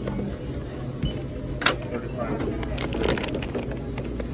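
Groceries being lifted out of a plastic shopping cart and set down at a checkout: a few sharp knocks and packaging crinkling, loudest about a second and a half in and again near three seconds. Under it runs a steady low store hum.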